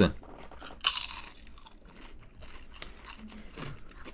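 A ridged Ruffles potato chip bitten with one loud crunch about a second in, followed by quieter chewing crunches. The crunch is deep.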